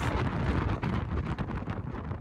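Strong wind buffeting the handheld camera's microphone: a gusty low rumble that rises and falls.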